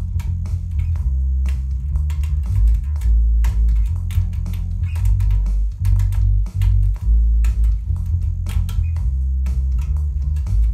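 Electric bass guitar playing a riff of plucked low notes, with a few short breaks between phrases.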